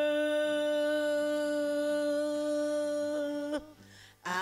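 A singer's voice holding one long, steady note in a gospel worship song, then breaking off about three and a half seconds in.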